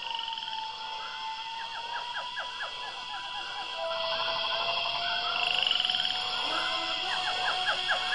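Tropical forest ambience of frogs and insects calling: a steady high insect drone, a long held call that drops to a lower pitch about halfway through, and runs of quick repeated frog calls near the start and again near the end.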